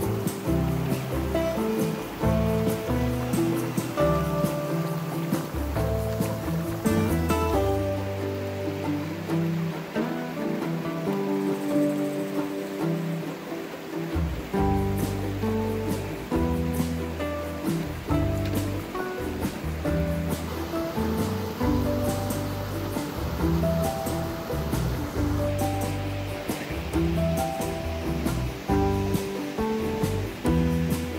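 Instrumental background music with a bass line and changing melodic notes.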